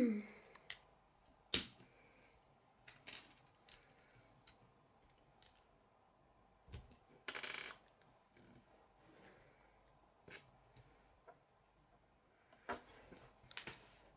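Plastic K'nex rods and connectors clicking as they are snapped together and handled: scattered single sharp clicks, with a short rattle about seven seconds in.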